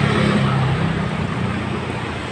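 Street traffic noise: a motor vehicle's engine running close by, a steady low hum over a haze of road noise.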